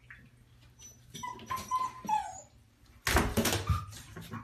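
Puppy whimpering: a thin, high whine held steady for about a second, then falling away. Near the end comes a short, loud rush of noise.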